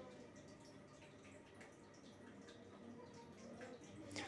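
Near silence, with faint scattered scrapes and clinks of a spatula stirring onion and spices in an aluminium kadhai.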